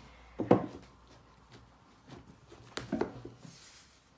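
Two dull thumps on a wooden pastry board, about two and a half seconds apart, as a ball of dough is handled on it; the first is the louder.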